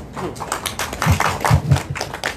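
Scattered clapping from a few people. A handheld microphone gives several dull thumps as it is handled, around the middle.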